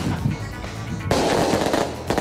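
Recorded firework bombs going off: a run of quick bangs, then a dense burst of crackling about a second in. It is the volley pattern called '3 por 3'.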